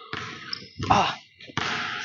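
Basketball being dribbled on a hardwood court, its bounces sharp and echoing, with a short voiced sound from the player about a second in.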